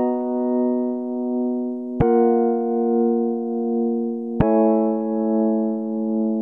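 Held chords from a keyboard-type software instrument in Ableton Live, played from Push 2. A new chord is struck about two seconds in and another past four seconds, and each rings on with a slow, gentle pulse in volume.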